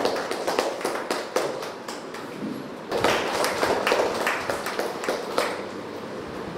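Scattered hand clapping from a small group of people, thinning out about two seconds in, picking up again at about three seconds and tailing off near the end.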